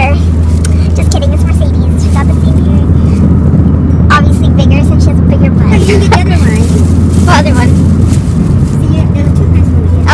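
Steady low rumble of a car's cabin on the move, road and engine noise, with brief snatches of laughter and voice over it.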